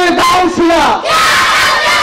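Loud shouted chanting of a man's voice through a PA system, with a crowd's voices shouting along; the voices rise and fall in pitch in short drawn-out calls.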